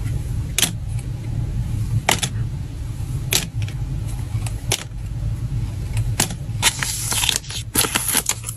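Crisp clicks about every second and a half as holographic photocards are handled and set down against a plastic toy cart, five in all. Near the end a foil packing bag crinkles. A low steady hum runs underneath.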